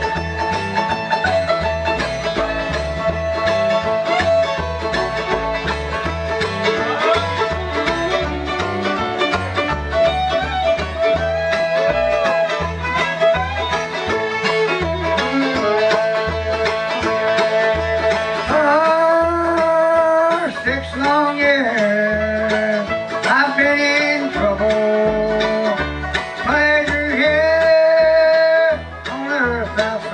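Live bluegrass band playing: fiddle, five-string banjo, guitar and mandolin over steady upright bass notes. In the second half the melody grows stronger, with sliding, wavering notes. It dips briefly about a second before the end.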